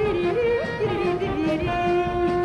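A woman singing a Hebrew song over instrumental accompaniment: a short gliding ornament, then one long held note through the second half.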